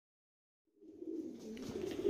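About a second in, after digital silence, domestic pigeons start cooing in a loft: a low, steady cooing.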